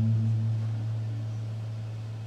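A single low note on an acoustic guitar, plucked just before, ringing on and slowly fading, with no new notes played over it.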